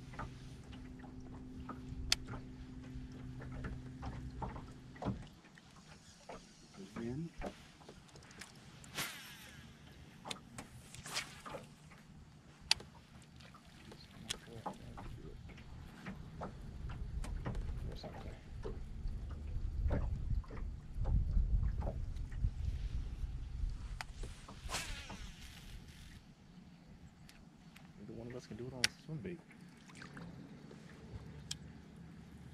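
A steady low motor hum from the boat that cuts off about five seconds in. After that come scattered sharp clicks and knocks of rod-and-reel handling, with a low rumble building and fading in the middle.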